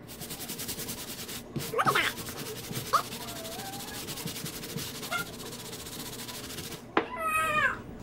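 Stiff-bristled hand brush scrubbing the mesh and white sole of a sneaker with shoe-cleaning solution, in rapid, even strokes that stop about seven seconds in. A brief high, wavering call is heard just after.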